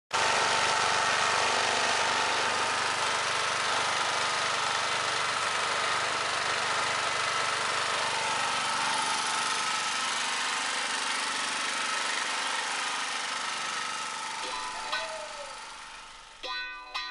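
Steady hiss of rain mixed with the running hum of a small portable generator, fading out over the last few seconds.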